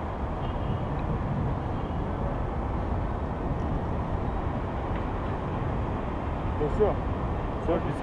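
Steady wind noise buffeting the camera microphone high on an exposed spire, a low rumbling hiss with no clear pitch. A voice is heard briefly near the end.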